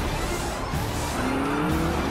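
Animated stock car speeding away from a pit stop: its engine revs up with a rising pitch in the second half and its tyres squeal, over background music.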